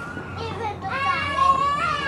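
A young child's high-pitched voice, a drawn-out wordless call whose pitch slides up and down, starting about half a second in.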